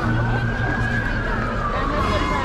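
A siren wailing, its pitch making one slow rise and fall, over crowd chatter.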